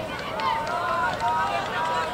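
Several voices shouting and calling out across an outdoor playing field during play, over a steady background of outdoor noise.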